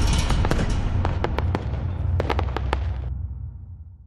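Sparkle-and-crackle sound effect from an animated channel outro: scattered crackling pops like small fireworks over a hiss and a low steady rumble. The crackle stops about three seconds in, and the rumble fades away.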